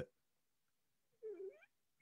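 Near silence, broken a little past the middle by one short, high-pitched call about half a second long that dips and then rises in pitch.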